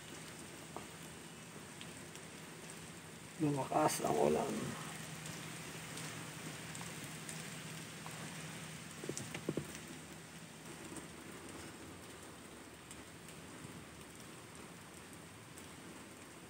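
Steady rain on the truck cab and windshield, heard from inside the cab as an even hiss. A person's voice is heard briefly about four seconds in, and a few light clicks come near the middle.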